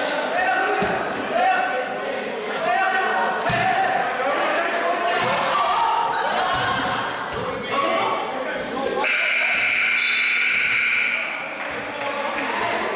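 Basketball game sounds in a large gym: players' and spectators' voices with a basketball bouncing on the court, the bounces sharpest about one and three and a half seconds in. Near the end a steady shrill tone sounds for about two seconds and then cuts off.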